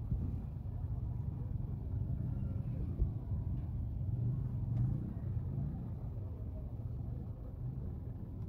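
Low, steady rumble of vehicle engines and street traffic, with faint crowd voices underneath.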